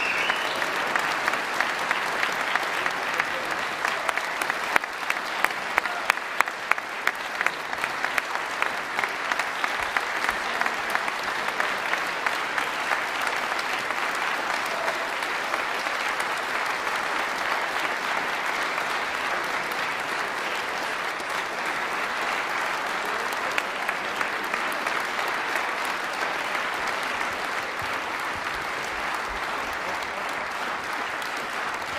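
Concert audience applauding: dense, sustained clapping, with a few louder individual claps standing out in the first several seconds, easing slightly toward the end.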